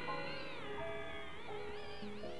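Improvised jazz ensemble music: a high pitched sound slides downward and wavers in pitch over several held notes.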